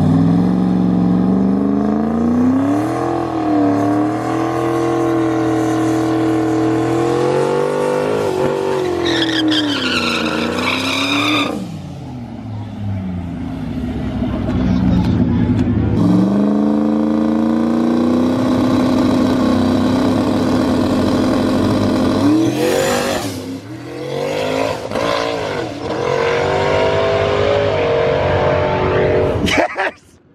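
Ford Mustang V8 engines running hard at a drag-strip starting line: the revs climb and fall several times and are held steady at high rpm for several seconds at a stretch.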